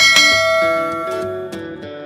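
A bright bell-chime sound effect, the notification bell of a subscribe-button animation, strikes once and rings out, fading over about a second and a half. Background music plays underneath.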